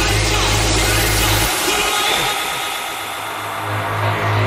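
Acid techno playing. About a second and a half in, the low bass drops out, leaving the higher synth layers; the bass starts to come back near the end.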